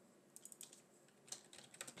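Faint computer keyboard clicks, a scattering of single keystrokes through the pause.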